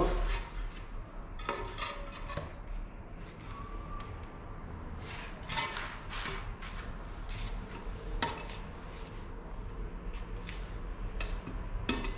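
Ceramic floor tiles and a metal tool clinking and knocking as the tiles are handled and set into tile adhesive: a few separate sharp clicks spread over several seconds.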